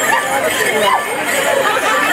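Crowd chatter: many voices talking and calling out at once, overlapping.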